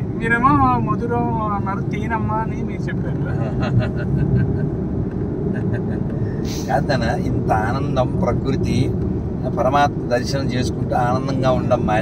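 Steady engine and road noise inside a small car's cabin while it drives at about 55 km/h on a narrow country road. A brief sharp knock comes about six and a half seconds in.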